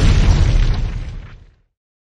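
Explosion sound effect: a loud blast with a heavy low boom that fades away and cuts out about one and a half seconds in.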